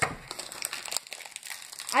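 Snickers bar wrapper crinkling in short, irregular crackles as a piece of the candy bar is taken, with a sharp click right at the start.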